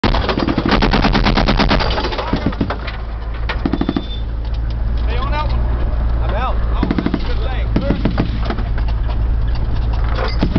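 Machine gun firing several short bursts of automatic fire from a vehicle-mounted position, the first burst the longest, with a vehicle engine running steadily underneath. A voice shouts between the bursts.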